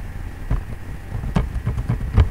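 A few irregularly spaced keystrokes on a computer keyboard as digits are typed, over a steady low hum.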